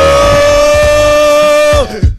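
A man's voice giving one long, loud held 'ooh' shout into a microphone. It swoops up in pitch, holds steady, and falls away near the end.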